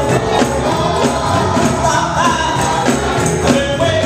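Live gospel music: a group of voices singing together over a band with a drum kit and guitar, with jingling cymbal or tambourine strokes keeping the beat.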